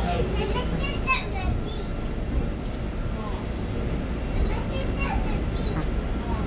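Passengers' voices talking inside the cabin of a Linkker LM312 electric bus. Under them runs the bus's steady low road rumble.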